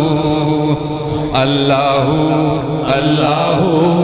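A man singing a Sufi devotional kalam in long, wavering melismatic phrases over a steady low drone.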